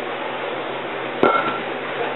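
A single short electronic beep, starting with a click about a second in, over a steady background hiss.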